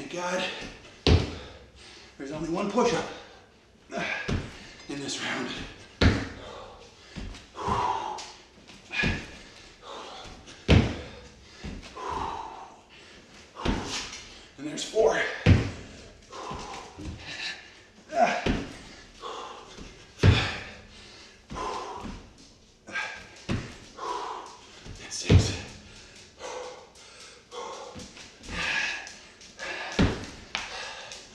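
Repeated thumps of a person doing burpees on an exercise mat over a hardwood floor, hands and feet landing every two to three seconds, with hard breathing between the landings.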